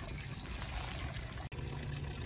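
Running water trickling steadily, with a brief break about one and a half seconds in.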